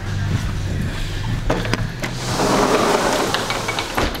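Clicks and rustle of a handheld camera over a steady low hum. About halfway through, the hum gives way to a broad hiss of open outdoor air as the doorway to the balcony is stepped through.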